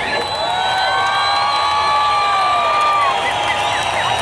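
Concert crowd cheering and whistling once the band stops playing. One long, high held note rises above the noise for about three seconds, followed by a few short whistles.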